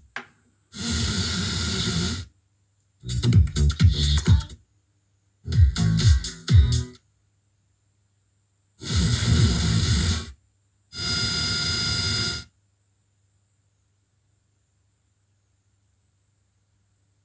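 FM radio on auto-search through a Panasonic RX-CT890 boombox's speakers: it stops on five stations in turn, plays about a second and a half of each broadcast, and goes silent between them while it tunes on. After the fifth station, about twelve seconds in, only a faint low hum remains.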